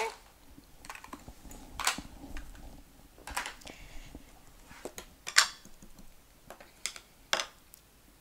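Scattered clicks and taps of small plastic stamp ink pad cases being handled, opened and set down on a stone countertop, the loudest about five seconds in.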